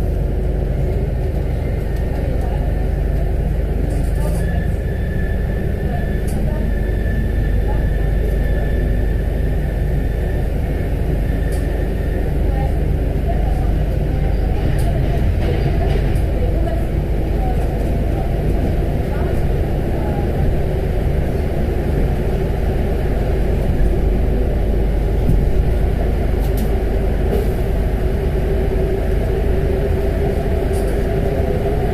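Paris Métro MP05 rubber-tyred metro train running through a tunnel, heard from inside the car: a steady rumble of running noise, with a thin steady whine in the first half.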